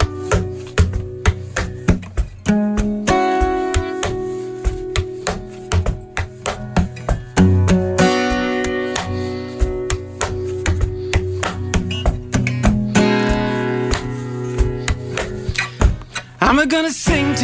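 Acoustic guitar strummed and picked, with other plucked strings, playing the instrumental opening of a folk song live, before any singing comes in.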